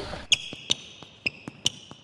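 A basketball bouncing on a hard floor: about eight sharp bounces, each with a short ringing ping, coming faster as it goes on.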